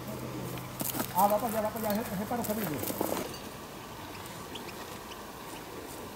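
A man's voice speaking briefly and indistinctly for about two seconds, starting about a second in, with a few light clicks, over a quiet outdoor background.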